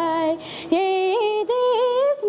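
A young woman singing a Nepali folk song unaccompanied, holding long notes with small ornamental turns in pitch. A quick breath about half a second in breaks the line before she sings on.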